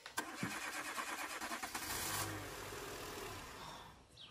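Car engine starting, then running briefly before fading out toward the end.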